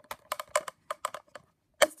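Plastic toy mini wheelie bin being handled: a quick run of about nine light plastic clicks and taps.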